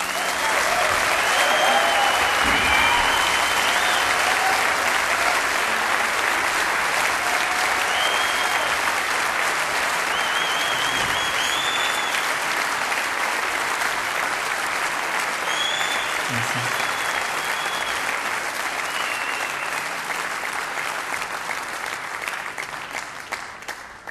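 A concert audience applauding after a song ends, with scattered cheers over the clapping; the applause swells up at once and fades out near the end.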